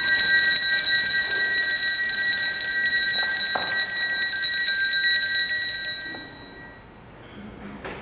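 Altar bells rung in a rapid, continuous peal during the elevation of the consecrated host, the signal of the consecration at Mass. The ringing fades out about six seconds in.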